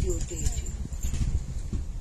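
A voice trailing off in the first moment, then a low rumbling background noise with no clear source.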